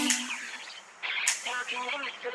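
Dance music breaks off at the start and the sound drops away briefly. From about a second in come indistinct voices talking, with no clear words.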